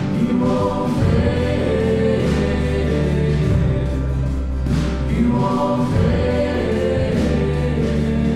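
Live contemporary Christian worship music: a band with several voices singing together over sustained bass notes.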